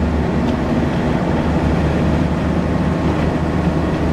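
The Noble M400's twin-turbocharged 3.0-litre Ford Duratec V6 cruising in sixth gear at a little over 3,000 rpm, heard from inside the cabin as a steady low drone.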